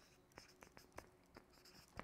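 Faint strokes of a marker writing on flip-chart paper: a few soft, short scratches spread across two seconds.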